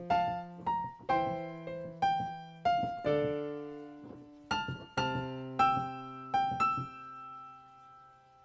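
Piano playing a slow passage of single right-hand notes over left-hand octaves stepping down from F to D. It ends on a C octave with G and E above, the last notes left to ring and fade.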